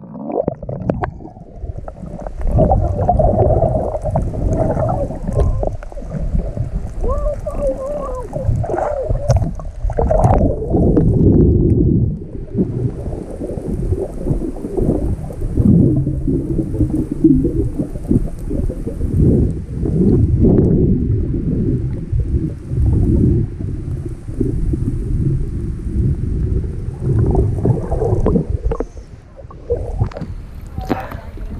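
Water sloshing and gurgling, heard muffled through a submerged action camera's waterproof housing as it moves underwater. A few brief wavering tones come about a quarter of the way in.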